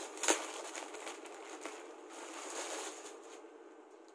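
Packaging being opened and rustled by hand, with a sharp snap about a third of a second in; the rustling dies down near the end as the clothes come out.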